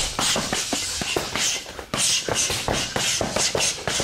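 A rapid flurry of punches and elbows smacking into leather focus mitts, several hits a second in a fast combination.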